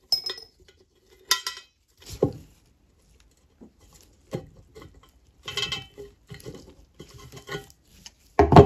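Tongue-and-groove pliers working a rusty screw on a metal acetylene lantern body: a string of sharp metallic clicks and short scrapes at irregular intervals, as the jaws grip, slip and knock against the metal.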